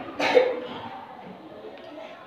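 A single short cough about a quarter of a second in, then quiet room tone.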